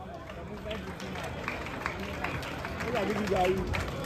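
Faint background talk from a seated outdoor audience, with scattered light clicks and knocks, growing a little louder near the end.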